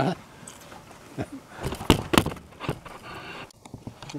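Knife cutting into an English cucumber by hand: a few crisp snaps and clicks, the loudest about two seconds in.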